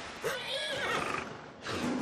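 A horse whinnying for about a second, then a loud, rough bear roar starting near the end.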